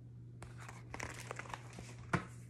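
Pages of a picture book being turned: a quick run of paper rustles and crinkles starting about half a second in, over a steady low hum.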